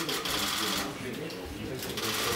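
Many camera shutters firing in rapid bursts, with the voices of a crowd mixed in.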